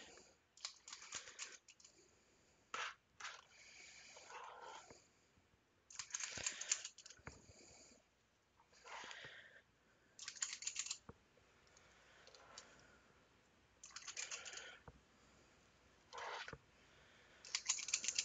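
Cookie dough being scooped with a metal cookie scoop and dropped in mounds onto a mat-lined baking sheet: faint short bursts of scraping and clicking, one every second or two.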